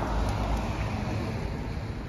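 Street traffic noise: a car driving by on the road, a steady rumble and tyre hiss.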